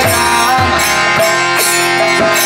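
Kirtan music: a harmonium sustains steady reed chords while a mridanga drum plays, its deep bass strokes dropping in pitch, about two a second.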